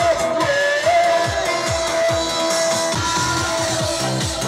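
Loud dance music played over loudspeakers, with a steady kick drum at about two beats a second and a voice holding one long sung note.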